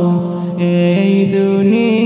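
A Bengali Islamic gajal sung by a man, drawing out long held notes that step from one pitch to the next.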